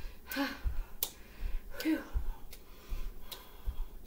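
A person breathing hard while stepping in place on carpet, with two short voiced exhales and soft, regular thuds of bare feet about twice a second. A few sharp clicks come in between.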